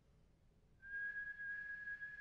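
Near silence, then a little under a second in a single high, steady whistling tone starts suddenly and holds.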